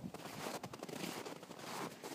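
Footsteps crunching through snow: an irregular run of soft crunches, a little louder near the end.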